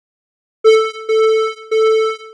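A buzzy electronic tone played back through a noise gate (Cakewalk's Sonitus:gate). It comes in sharply about half a second in and is chopped into short pulses, roughly two a second: the gate opens only when the signal reaches its threshold and shuts between.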